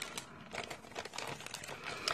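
Thick plastic bag crinkling softly and irregularly as it is picked up and handled.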